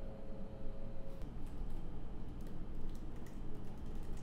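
Typing on a laptop keyboard: irregular soft key clicks, coming more often from about a second in.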